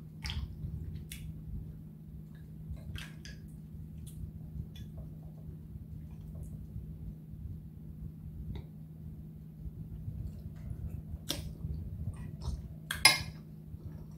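Eating at a table: a fork clinking on dishes and scattered small clicks, with one sharper, louder clink about a second before the end, over a steady low hum.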